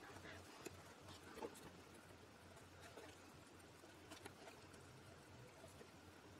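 Near silence, with a few faint, soft taps and rustles as cardboard jigsaw puzzle pieces are set down, slid and pressed together on a table.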